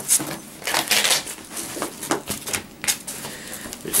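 A heavy Cordura nylon bag and its Velcro flap being handled: an irregular run of short scratchy rustles and crackles as the stiff fabric is folded and pressed.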